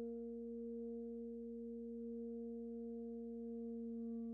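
Alto saxophone holding one long, soft, pure-toned note, with a slight change of pitch just after the end.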